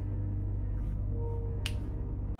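A single finger snap about one and a half seconds in, over a low, steady background music bed.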